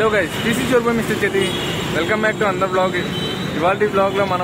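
A man talking, with road traffic in the background.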